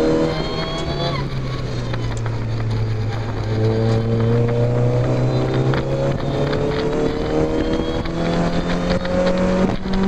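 Mazda MX-5 four-cylinder engine heard from the open cockpit on track: the revs drop about a second in as the driver lifts off, then climb steadily under acceleration through the rest, over a constant rumble of wind and road noise.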